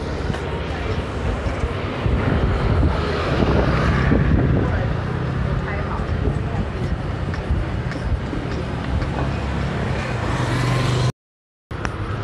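Street traffic noise: a steady rumble of passing cars and motor scooters with a low engine hum, mixed with indistinct voices. The sound cuts out completely for about half a second near the end.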